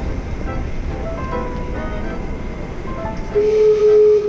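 Gastown Steam Clock's steam whistles sounding a run of notes over street noise, then one long, loud whistle note near the end.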